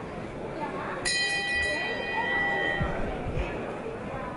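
Boxing ring bell struck once about a second in, its metallic ring fading out over under two seconds: the signal that starts round two.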